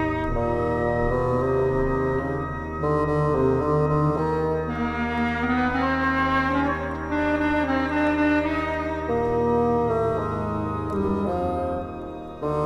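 Microtonal chamber ensemble music: sustained, overlapping woodwind and brass notes that change every second or two over a steady low bass note.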